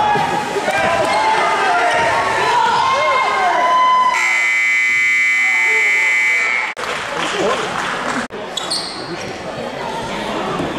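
A basketball being dribbled on a gym floor amid crowd voices, then a gym scoreboard buzzer sounding one steady tone for about two and a half seconds, starting about four seconds in.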